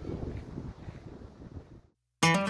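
Wind buffeting the camera microphone, fading away and cut off abruptly just before the end.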